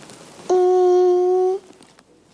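A girl humming one long, level "hmmm" on a single note, starting about half a second in and lasting about a second.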